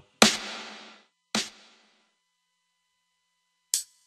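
Three single drum-machine samples from Maschine 1.7, each triggered by clicking a MIDI note in Pro Tools. The first is the loudest and rings for about a second, the second is shorter, and near the end comes a brief high tick.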